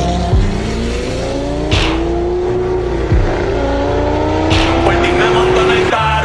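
A car engine revving up through the gears: its pitch climbs, drops at a shift about three seconds in, then climbs again, with two short whooshing rushes, over a steady low bass line.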